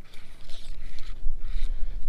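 Steady low rumble of wind on the microphone, with a few faint handling rustles as the underwater camera's cable is fed by hand down the ice hole.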